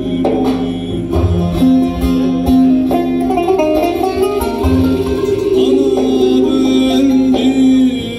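Live Turkish folk music played through a PA system: a bağlama (long-necked lute) and keyboard accompany a male singer, with a few low drum-like thumps.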